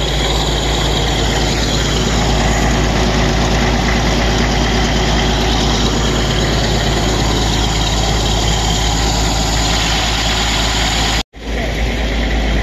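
Old tractor's engine idling steadily close by, with a brief dropout near the end.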